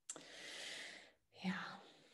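A woman's audible breath: a sudden inhale of about a second, a short pause, then a breathy exhale that opens with a brief voiced sound.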